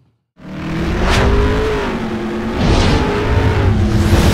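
Loud outro sound effect: a deep bass drone under steady held tones, swept by two rising whooshes, about a second in and near three seconds. It starts suddenly after a half-second gap.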